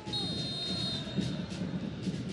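A high, steady whistle-like tone for about a second, then fading, over the even noise of a stadium crowd in a football broadcast.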